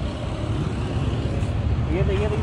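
Royal Enfield Continental GT 650's 648 cc parallel-twin engine idling steadily, a low even rumble through its exhaust. The exhaust had just overheated and glowed red, which the owner puts down to water trapped inside behind the dB killers.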